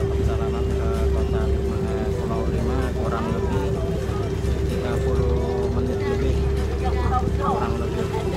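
A small wooden boat's engine running steadily under way, a constant drone with a steady hum.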